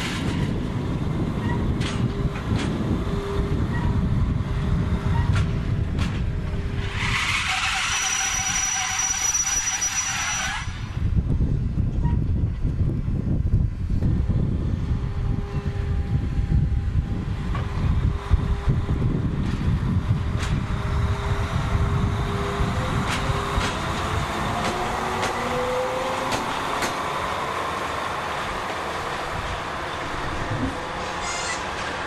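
NS Class 6400 diesel-electric locomotive shunting: its diesel engine runs with a steady low rumble and hum. A hiss of air lasts about three seconds, starting around seven seconds in. The engine note rises near the end as the locomotive pulls away.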